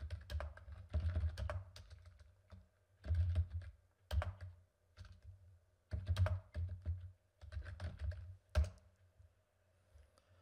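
Computer keyboard typing: clusters of keystroke clicks, each with a dull low thud, in short bursts with pauses between, as a command is typed at a terminal.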